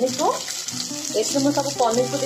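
Paneer cubes sizzling as they fry in hot oil in a non-stick kadai: an even frying hiss, with a pitched tune running underneath.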